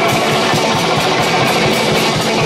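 A rock band playing live: guitar and drums, with a steady, driving beat.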